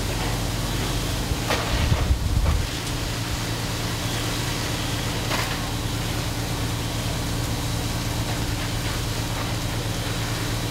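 Fire apparatus diesel engines running steadily under pump load, a constant low drone with a steady hum, while water is flowing through an aerial ladder's master stream. A brief louder rumble comes about two seconds in, and a couple of faint knocks stand out.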